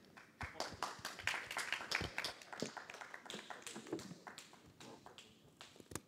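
Light audience applause: many irregular hand claps that start about half a second in and thin out and fade near the end.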